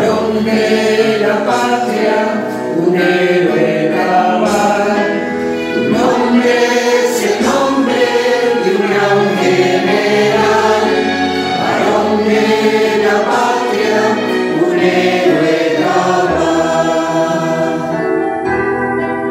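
Choir singing a town anthem, several voices together in harmony, without a break.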